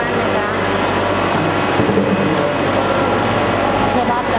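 Steady running noise of a mineral water plant, with water pouring from a pipe into a 20-litre plastic jar as it fills, over a low steady hum.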